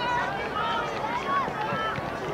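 Several high-pitched voices calling out and shouting at a distance, overlapping, from players and people along the sideline of a youth soccer field; no words come through clearly.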